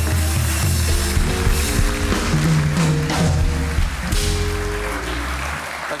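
A studio house band playing a short musical interlude: a strong bass line under held notes, which stops about five and a half seconds in.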